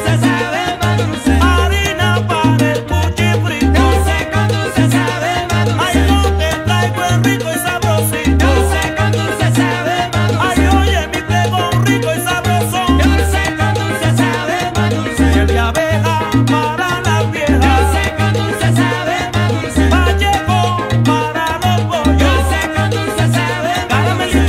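Recorded salsa music at a steady, loud level, with a low bass figure repeating about every two and a half seconds under a dense band mix.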